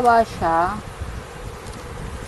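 A speaker's voice ending a word, then a drawn-out hesitation sound, followed by about a second of faint background hiss.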